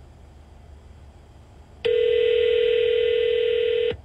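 Telephone ringback tone heard over the line: one steady ring of about two seconds, starting about two seconds in and cutting off sharply. It signals that the called phone is ringing and has not yet been answered.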